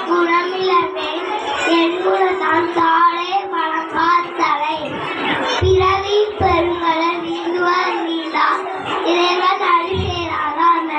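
A young boy singing a song into a microphone, amplified over a loudspeaker, with music playing behind his voice.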